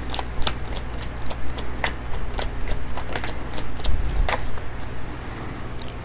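A deck of oracle cards being shuffled by hand: a run of quick, irregular card snaps and flicks, over a faint steady low hum.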